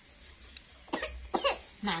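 Two short coughs, about half a second apart, after a quiet first second.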